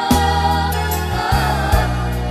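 Batak-language pop song: several voices singing together over a bass line and percussion.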